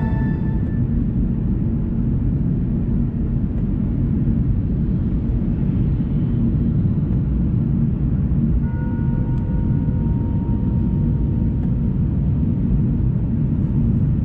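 Steady low rumble of tyre and engine noise inside a Mercedes-Benz car cruising on an expressway, as music fades out in the first second.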